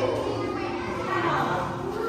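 Children's voices, chattering and calling out, high-pitched and gliding up and down, with other people talking behind them.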